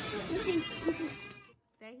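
A high, wordless voice over steady hiss, cutting off suddenly about one and a half seconds in; a quieter voice begins just after.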